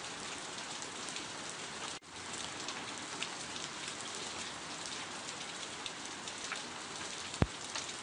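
Steady rain pattering, with faint scattered drop ticks. The sound cuts out for an instant about two seconds in, and a single short low thump stands out near the end.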